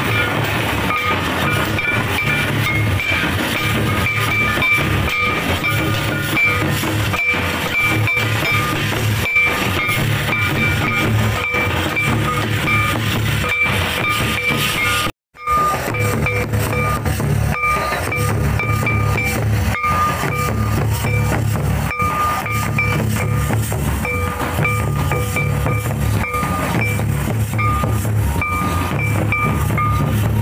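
Live Santal dance music: drums beating a repeating rhythm under a high piping tone held in long, broken notes. It cuts out for a moment about halfway through.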